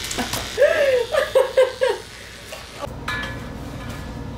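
A stone pestle knocks in a stone mortar, then a woman laughs in short pulses for about a second. A steady low hum takes over near the end.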